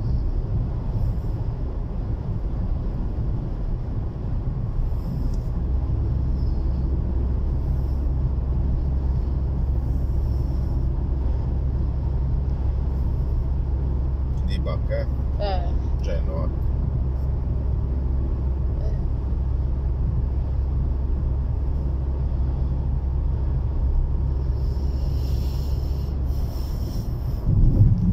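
Steady low drone of a car's engine and tyres heard from inside the cabin while driving, getting a little louder about five seconds in.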